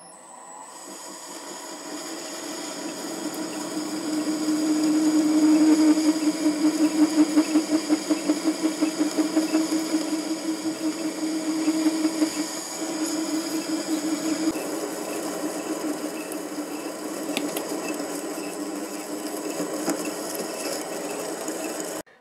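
MN-80 bench lathe running with a steady motor-and-gear whine while a boring bar bores out a hole in a brass blank. The sound swells over the first few seconds, pulses evenly for a while, and stops abruptly at the end.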